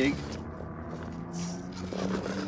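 Small brushed electric motors (37-turn 380-size) of an RC rock crawler running at low speed, a faint steady whine that rises slightly in pitch. The truck is driving on its dig setting, the rear axle held while the front pulls. A brief hiss comes about halfway through.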